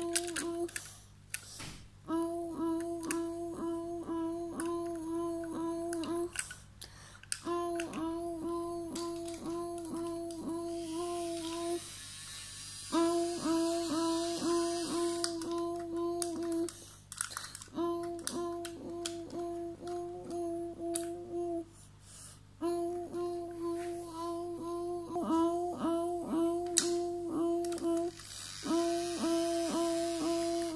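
A level-crossing warning sound: one steady pitch pulsing about three times a second, in runs of about four seconds with short breaks between them. A toy train's battery motor whirs underneath around the middle and again near the end.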